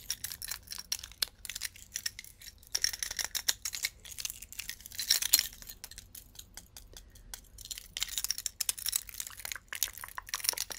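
A chunky gold necklace handled close to the microphone: its chains and metal pieces clink and click in quick, irregular bursts, busiest in two spells, around the middle and near the end.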